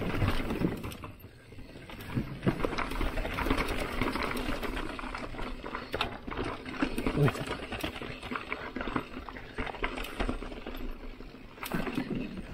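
Mountain bike rolling over wooden boardwalk planks and a rock-paved trail: a steady rush of tyre noise with irregular small rattles and knocks from the bike going over the boards and stones.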